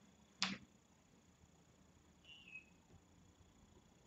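Near silence of a quiet room, broken by one sharp click about half a second in and a faint, short high chirp a couple of seconds later.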